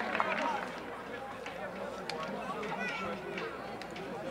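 Scattered, distant shouts and calls of footballers and spectators during play, quieter than ordinary speech.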